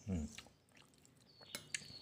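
A short murmured 'hmm', then a few faint clicks of a metal spoon against a ceramic plate near the end as rice is scooped.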